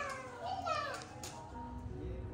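Young child's voice, two short high-pitched calls in the first second, over soft background music; a low steady hum comes in near the end.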